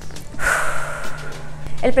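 A whoosh sound effect about half a second in, fading away over about a second, over background music.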